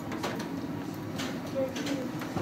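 Faint, scattered voices talking in a room over steady background noise, with no distinct sound standing out.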